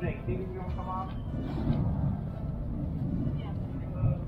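Faint voices of people talking at a distance over a low, steady rumble.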